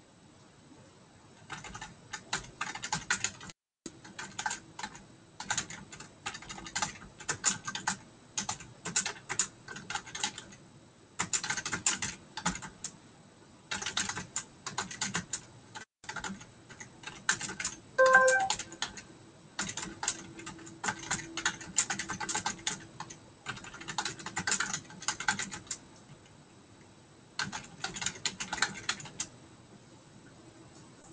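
Typing on a computer keyboard in bursts of rapid keystrokes with short pauses between them. A brief electronic tone sounds about 18 seconds in.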